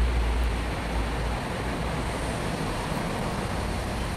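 Steady outdoor background noise, with a low rumble on the microphone that drops away about a second and a half in.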